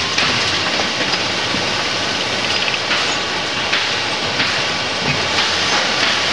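Steady mechanical noise of factory machinery with an irregular clattering rattle that swells every second or so.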